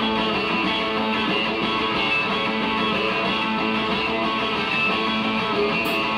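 Live rock band's instrumental intro: guitar strumming sustained, ringing chords at a steady volume, with no singing.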